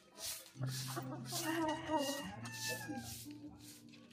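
Rooster crowing once: one long call of about two and a half seconds, starting about half a second in.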